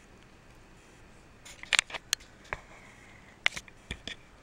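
A few small, sharp clicks and taps of handling, starting about one and a half seconds in, as the doll charm on its chain is hung back on a metal hanger stand.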